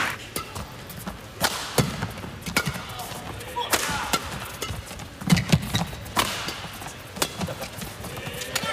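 Badminton rally: sharp racket strikes on the shuttlecock in a quick, irregular exchange, with low thuds from the players' footwork on the court.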